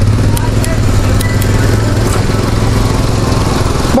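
A small engine droning steadily on a street, with traffic noise around it.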